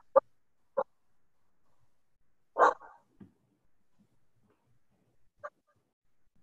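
A dog barking four times in short, sharp barks, the third the loudest and longest.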